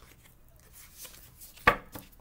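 Tarot cards being handled over a table, with one sharp tap on the tabletop near the end.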